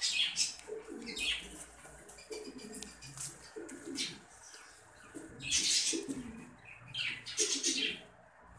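Domestic pigeons cooing over and over, with short bursts of wing flapping in between.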